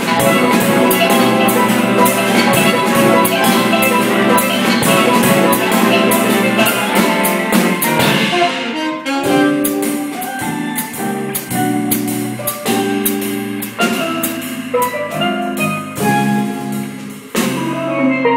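Jazz ensemble playing live: a saxophone section of tenor, alto and baritone saxophones with drum kit in a full, dense passage. About halfway through the texture thins to sparser, separate held notes.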